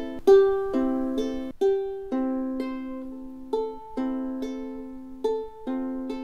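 Ukulele fingerpicked in an arpeggio pattern: fourth string, then third and second strings plucked together, then first string. The notes come about two a second and ring on over one another.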